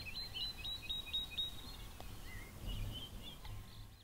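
A small bird chirping a quick run of short high notes, about four a second, that stops about a second and a half in, then a few softer chirps near three seconds, over faint low background rumble.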